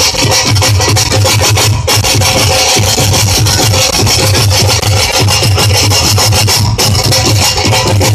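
Live Punjabi folk instrumental ensemble playing loudly, driven by a dhol's fast, steady beat under a dense, jangling mass of higher instruments.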